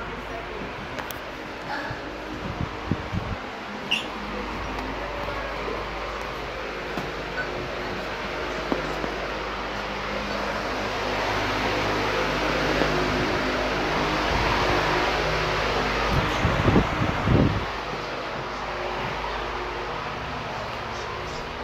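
Steady ventilation fan hum and air noise in a steel ship passageway, with footsteps and a few clicks. A short burst of low thumps near the end is the loudest thing.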